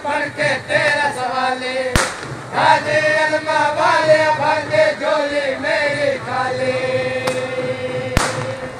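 A singer chanting a devotional song without instruments, in ornamented, gliding phrases, holding one long note near the end. A sharp click cuts across it about two seconds in.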